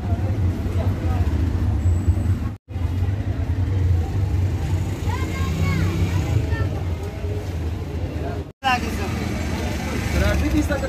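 Busy street ambience: a steady low rumble of road traffic with voices in the background. It drops out briefly three times: at the very start, about two and a half seconds in, and near the end.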